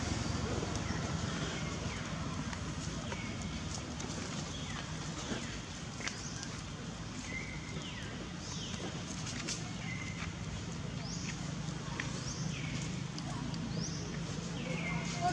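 Short, high chirping animal calls repeat about once a second over a steady low rumble, with a few sharp clicks in between.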